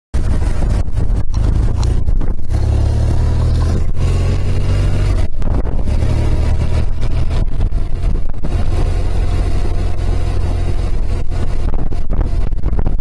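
BMW R 1200 GS motorcycle's boxer-twin engine running as the bike is ridden on the road, a steady low rumble.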